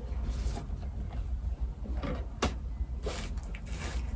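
A cardboard shoe box lid being lifted off and the contents handled: brief scraping and rustling, with one sharp knock about two and a half seconds in, over a low steady hum.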